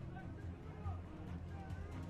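Background music with a steady low bass, with faint voices under it.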